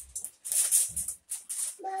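Packaging being handled, rustling in four or five short irregular bursts with brief quiet gaps between them. Near the end a small child calls out.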